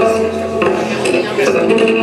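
Double bass music: sharp percussive knocks recurring roughly every half-second over a bed of sustained pitched notes.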